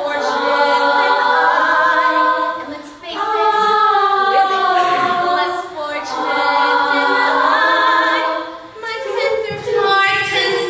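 Girls' vocal ensemble singing a cappella in harmony with a female solo voice, in sustained phrases with short breaks about three seconds in and again near the end.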